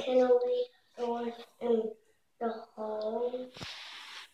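A toddler's high voice babbling in a sing-song way over a picture book, in about five short phrases.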